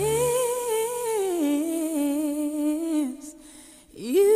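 A solo woman's voice singing a wordless held note with vibrato, nearly unaccompanied. It slides up at the start, steps down to a lower note about a second in, fades out around three seconds in, and a new note slides up at the very end.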